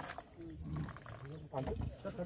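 Caged leopard growling, with people's voices around it; the growl is louder about one and a half seconds in.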